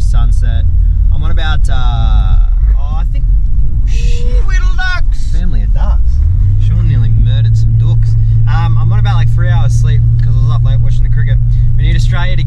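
Car engine and road noise heard from inside the cabin while driving: a constant low rumble, with a low hum that steps up in pitch about six seconds in and then holds steady.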